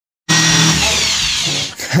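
Handheld electric drill running as it bores into a wooden cabinet shelf. Its motor whine falls in pitch as it slows and dies away near the end.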